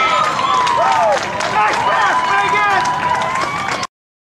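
Overlapping high-pitched shouts and calls from players and spectators at an outdoor girls' soccer game, one voice holding a long call; the sound cuts off abruptly near the end.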